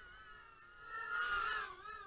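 Faint whine of the GEPRC GEP-HX2 110 mm brushless micro quadcopter's motors and propellers in flight. Its pitch wavers up and down with the throttle and it grows louder for about a second in the middle.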